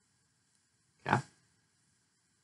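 Near silence with one short spoken "yeah" from a man, about a second in.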